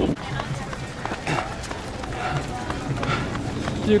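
A runner's footfalls and the jostling of a handheld action camera, with a steady low rumble of wind on the microphone and faint scattered voices around.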